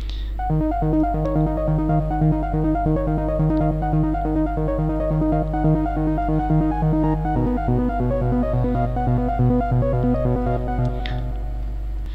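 A melody played on the Subtractor software synthesizer in Reason, on its default patch: a run of stepped synth notes over a bass line that shifts lower partway through. A steady low hum runs underneath.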